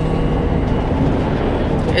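Steady low road and engine rumble inside the cab of a moving motorhome.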